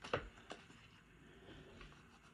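Oracle cards being pulled off a deck and handled: two short, soft clicks near the start.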